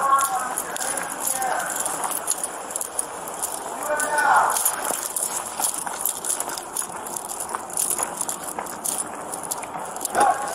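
Footsteps crunching on a gravel dirt road with equipment rattling, as heard on a body-worn camera, with brief snatches of voice at the start and about four seconds in.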